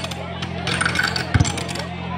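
Outdoor crowd chatter, with scattered clicking and rattling and a single low thump about one and a half seconds in.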